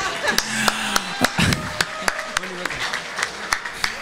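Indistinct voices and laughter with irregular sharp clicks and taps, and a dull thump about one and a half seconds in.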